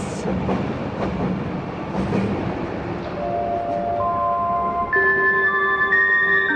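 Passenger train running as it moves off, an even rolling noise with no tune. About halfway through, soft music of held notes comes in, one note added after another until they form a chord.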